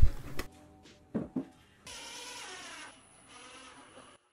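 Two short knocks about a second in, as the plywood cabinet is handled, then a cordless drill running for about a second.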